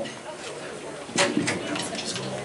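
Indistinct voices and room noise in a hall with no music playing; a short burst of a voice about a second in.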